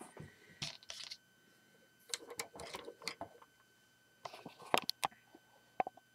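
Handling noise: light plastic clicks and rustles in three short clusters, then one sharp click near the end.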